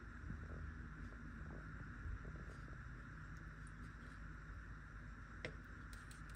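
A kitchen knife scoring raw abalone on a wooden cutting board: a few faint, short clicks and taps, the clearest a sharp click near the end, over a steady low hum.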